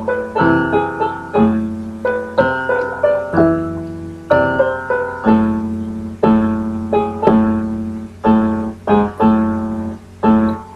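Solo piano playing a slow neoclassical passage: chords struck about once a second, each left to ring and fade, with a couple of quicker strikes near the end.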